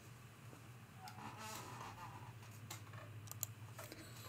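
Faint squeaking from a chair that needs oiling as the person in it moves, with a few light clicks near the end.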